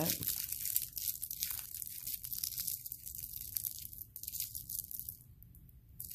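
Thin dichroic cellophane film being crinkled and crumpled up between the fingertips: a dense run of fine crackles that thins out near the end.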